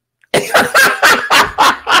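A man laughing hard in loud, repeated bursts, about three a second, starting a moment in.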